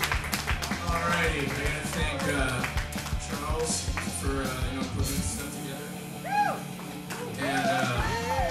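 Live rock band noise between songs: scattered electric guitar notes and taps, with crowd chatter underneath.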